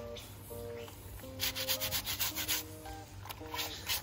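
Wet cloth being scrubbed by hand in a basin of soapy water, in quick rubbing strokes about four a second that start about a second and a half in, pause briefly, then resume near the end. Soft background music plays underneath.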